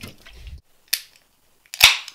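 A can of Monster Energy drink cracked open near the end: a sharp pop of the ring-pull with a short hiss of escaping gas. Before it, a low thud at the start and a light click about a second in as the can is handled.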